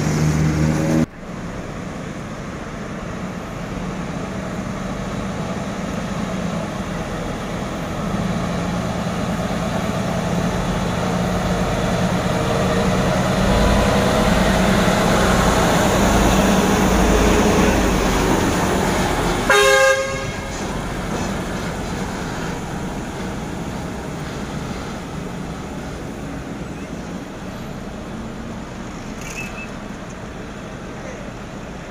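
Heavy multi-axle mobile crane driving past: its engine and tyres grow louder as it approaches, peak, then fade as it moves away, with one short horn blast about twenty seconds in.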